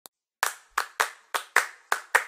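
Hand claps setting the chacarera rhythm: after a short silence, six sharp claps in an alternating long-short pattern, with no other instruments.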